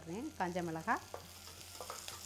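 Chopped onion and green chillies frying in oil in an aluminium pressure cooker pot, stirred with a metal spatula: a sizzle with a few sharp clinks of metal on the pot. A woman's voice is heard briefly in the first second.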